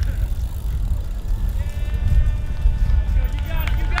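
Heavy wind and handling rumble on the microphone of a camera carried at a run. A little under halfway through, a voice joins with one long held call, and shouted speech starts near the end.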